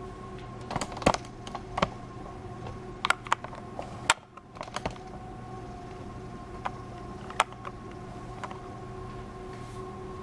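A dozen or so sharp clicks and taps at irregular intervals, over a steady hum with a faint whine.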